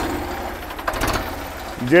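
Ford 3600 tractor's engine idling steadily, an even low beat.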